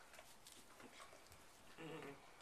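Near silence with faint rustling in straw bedding; near the end, a brief low, steady-pitched voice sound lasting about a third of a second.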